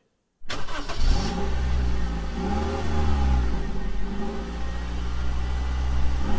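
A car engine starts about half a second in, then keeps running with its revs rising and falling a few times, used as a logo-intro sound effect.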